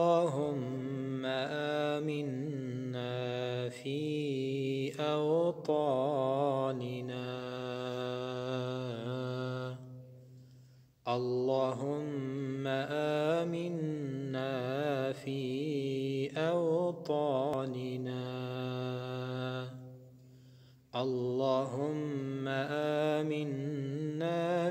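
A man chanting an Arabic supplication (dua) with no accompaniment, in long drawn-out phrases with wavering ornamented notes. Three phrases, with short pauses for breath about ten and twenty seconds in.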